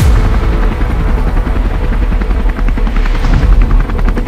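Helicopter rotor beating in a fast, steady chop.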